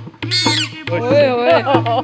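Shrill, whistle-like puppet voice made through a Rajasthani puppeteer's boli (mouth reed): a short high squeak, then a longer warbling, wavering call. A steady electrical hum runs underneath.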